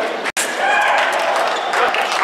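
Several people talking over one another in a large, echoing hall. The sound cuts out completely for a moment about a third of a second in.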